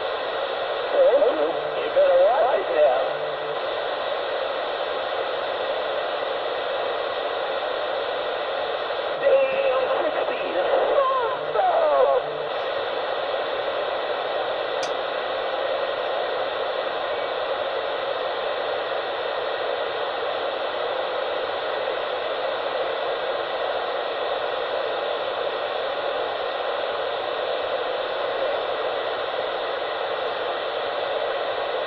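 Steady static-like hiss with two brief stretches of a distorted, far-off-sounding voice, about a second in and again around ten seconds in.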